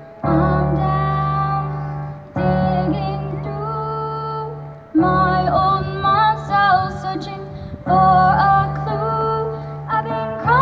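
A young girl singing with her own electric keyboard accompaniment, playing in a piano voice. Sustained chords are struck afresh about every two to three seconds, with the sung line gliding over them.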